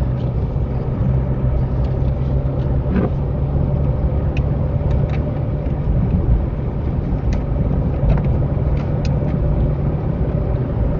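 Car engine and road noise inside the cabin while driving at about 50 km/h: a steady low drone, with a few light clicks.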